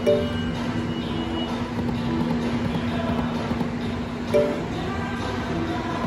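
Video slot machine playing its game music while the reels spin, with a short chiming jingle as each spin starts: one at the beginning and another about four seconds in.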